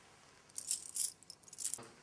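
A bunch of metal keys on a ring jangling as they are handed over, in a few short jingles about half a second in and again near the end.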